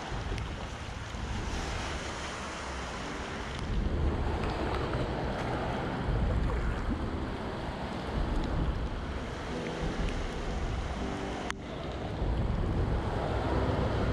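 Steady rush of creek current swirling around the wading angler and his landing net, with wind noise on the microphone. A single sharp click near the end.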